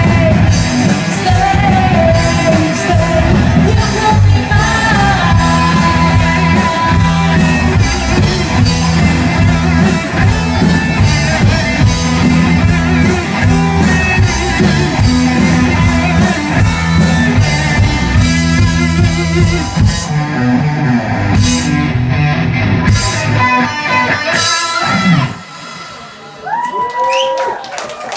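Live rock band playing: electric guitars, bass and drums with a woman singing. The song stops suddenly about 25 seconds in, followed by audience whoops and clapping.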